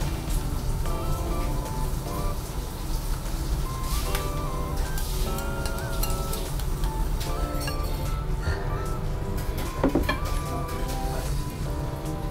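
Background music of short, repeated melodic notes, with a few brief clinks and knocks from a spoon and bowl as ramen is eaten, the loudest about ten seconds in.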